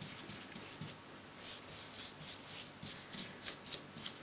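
Faint, quick strokes of a paintbrush brushing water-based varnish onto a polyester frame, a few strokes a second.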